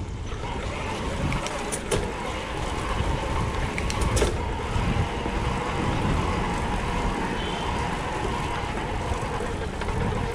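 Mountain bike rolling over cobblestones: a steady rumble of the tyres with the rattle of the bike, and a couple of sharper knocks about two and four seconds in.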